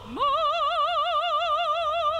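Operatic soprano voice sliding up into a high note and holding it with a wide, even vibrato for about two seconds.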